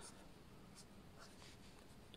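Faint scratching of a pen drawing short strokes on graph paper, barely above room tone.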